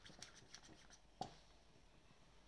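Faint clicks from a hand-held vacuum pump drawing air out of a plastic cupping cup, with one sharper click a little after a second in.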